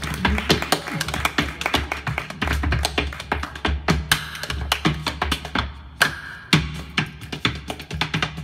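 Body percussion and flatfoot clogging: hand claps and slaps on the chest and thighs mixed with percussive clog steps on a wooden stage, a rapid improvised rhythm of sharp strikes several per second. A low steady hum runs underneath.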